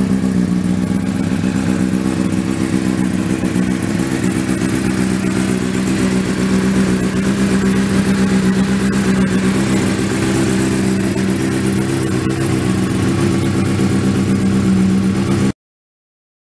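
Honda CBR600RR's inline-four engine running steadily at a constant speed through an Arrow aftermarket silencer. The sound cuts off suddenly near the end.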